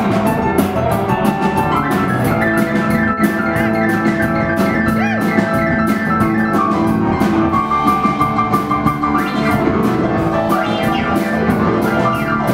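Live rock and roll band playing an instrumental passage without vocals: a drum kit keeps a steady cymbal beat under several pitched instruments.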